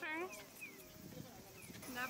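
Japanese pedestrian crossing signal giving short, falling bird-like electronic chirps, about one a second, over street bustle, with a woman's brief "mmm" and a word at the start.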